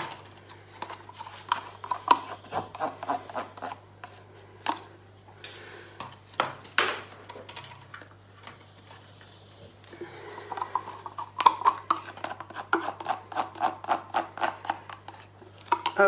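A plastic paint cup being scraped out: a run of short, scratchy rubbing strokes with light clicks, sparse at first and coming thick and fast in the second half.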